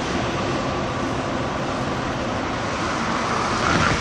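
Steady outdoor background noise at a harbour: an even hiss with no distinct events, swelling slightly near the end.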